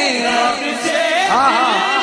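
A man's voice chanting an Urdu devotional poem in praise of Imam Hussain, its pitch bending and ornamented on long drawn-out notes.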